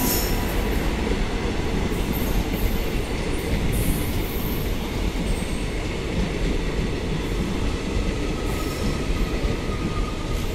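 Passenger coaches of an express train passing close by at speed: a steady rumble and rattle of steel wheels on the rails, with faint high wheel squeal in the first few seconds.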